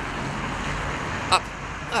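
Road traffic going by: a steady hiss of tyres and engine that eases off about a second and a half in.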